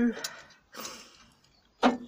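A few light clicks and a short soft rustle as hands handle a car ignition coil pack on its metal mounting bracket, fading to quiet before a sharp click near the end.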